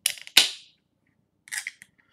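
A beer can being handled: one sharp metallic click with a short hiss that dies away quickly, followed by a few faint ticks near the end.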